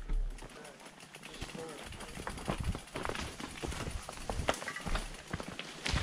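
Mountain bike rolling slowly over a rocky forest trail: irregular clicks and knocks from the bike and tyres, with faint voices in the background.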